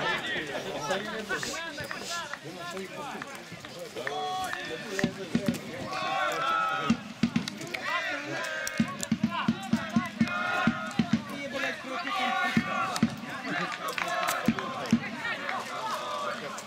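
Voices calling out and talking across an outdoor football pitch, with a run of short sharp knocks in the middle of the stretch.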